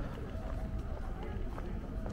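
Footsteps on a paved walkway, with people talking nearby over a steady low rumble.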